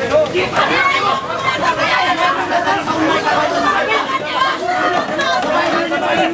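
Many voices shouting and talking over one another at once in a tightly packed crowd of protesters and riot police.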